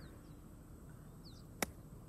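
A single sharp click of a wedge striking a golf ball on a flop shot, about one and a half seconds in. Faint bird chirps before it.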